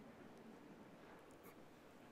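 Near silence: faint room tone in a pause between spoken sentences.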